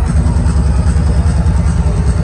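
Loud electronic dance music from a nightclub sound system, carried by a heavy, fast-pulsing bass.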